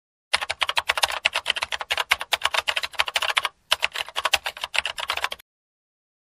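Typing sound effect: a fast, dense run of keyboard clicks with a short break about three and a half seconds in, stopping abruptly half a second before the end.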